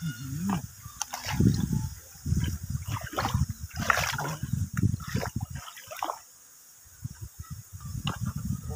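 Shallow muddy water splashing and sloshing as someone wades and works their hands through it, in irregular bursts with a short lull about six seconds in.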